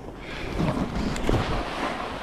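Wind rushing over the microphone while a snowboard slides and scrapes over snow, swelling about half a second in.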